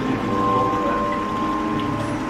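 Ambient music with held, steady notes, one high note sustained over quieter lower ones, over a wash of moving water from the pool.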